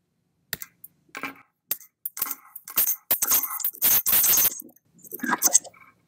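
Audio echo and feedback noise from two Google Meet sessions running on the same computer, each picking up the other. It comes as a run of short, irregular, harsh bursts that grows loudest in the middle and ends just before the end.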